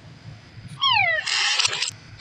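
Cartoon soundtrack played backwards: after a near-quiet start, a short cry falling steeply in pitch about a second in, overlapping a burst of hiss that lasts nearly a second.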